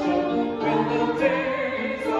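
Choral music: a choir singing a slow hymn in sustained, overlapping voices.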